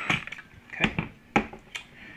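A cordless drill cuts off at the very start, followed by about five short, sharp clicks and knocks as the drill and small parts are handled on a workbench.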